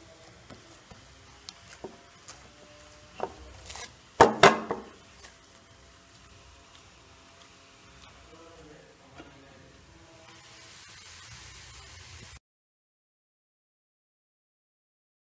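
A hand kneading rice-flour dough in a steel bowl, with scattered knocks and clicks against the metal and a louder clatter of a few knocks about four seconds in. The sound cuts off abruptly shortly before the end.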